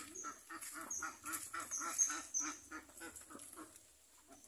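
Birds calling: a run of quick, repeated calls, about four a second, loudest around the middle, with a few short high chirps over them.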